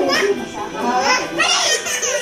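A baby's high-pitched, excited babbling and vocalising, with other voices overlapping.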